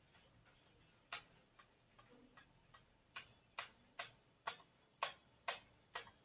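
A run of short, sharp clicks: a few faint ones from about a second in, then a steady run of about two a second from about three seconds in.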